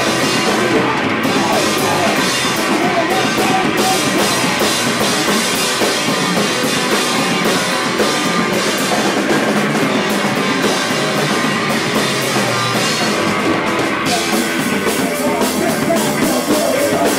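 Live rock trio of drum kit, bass and electric guitar playing loud and without a break, with the cymbals easing off for a moment about a second in and again near the end.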